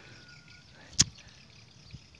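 A single sharp click about a second in, standing out against a quiet outdoor background, with a much fainter tick near the end.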